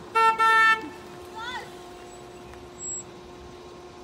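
Car horn sounding two quick toots, a short one then a slightly longer one, from an SUV pulling up to the curb.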